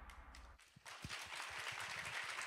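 The last of a video reel's music dies away, then light audience applause starts about a second in.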